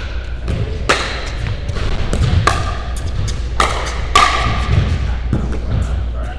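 Pickleball rally: paddles striking the hollow plastic ball, four sharp pops with a short ringing tone spread over about three seconds, with fainter taps between, over a steady low hum.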